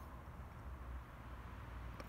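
Faint background noise: a steady low rumble with a light hiss, with no distinct event.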